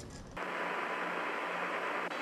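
Steady radio static hiss from the Apollo 11 lunar-surface transmission, starting suddenly about half a second in, with a faint steady tone through it.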